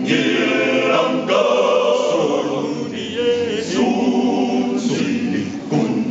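A men's choir singing in phrases, the voices moving together with short breaths between lines.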